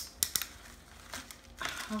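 Gift-wrapping paper crinkling as a present is unwrapped, with a few sharp crackles near the start and then quieter rustling.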